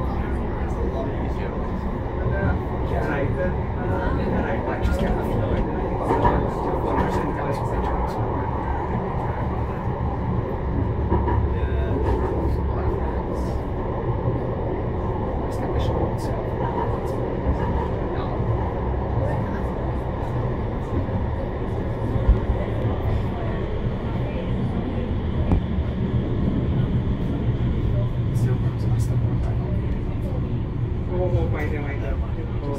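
Manchester Metrolink Bombardier M5000 tram running along the track, heard from inside the driver's cab: a steady low rumble of wheels on rail and traction motors with scattered light clicks. There is one sharp knock about three-quarters of the way through.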